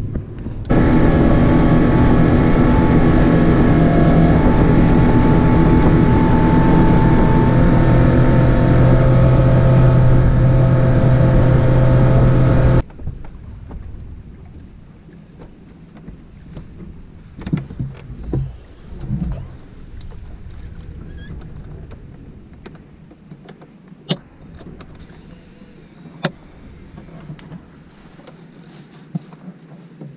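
Mercury outboard motor running steadily under way for about twelve seconds, then cutting off abruptly. A much quieter stretch follows with a few scattered knocks and clicks.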